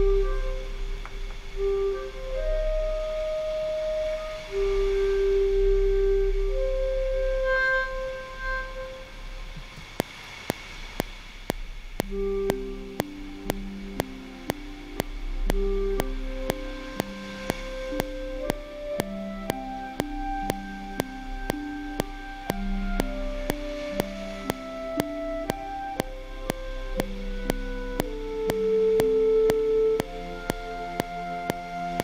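Sampled legato clarinet played from a MIDI keyboard: a slow melody of held notes. About ten seconds in, a metronome click starts at about two ticks a second, and shortly after, a lower accompaniment of repeated notes plays under the clarinet line.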